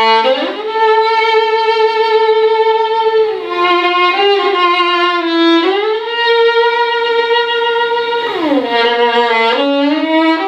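Solo violin bowed on a Pirastro Evah Pirazzi Gold silver-wound G string: a slow melody of long held notes that slide from one pitch to the next. About eight and a half seconds in, it glides down to a low note.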